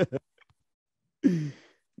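A man's single breathy sigh, falling in pitch, a little past halfway through.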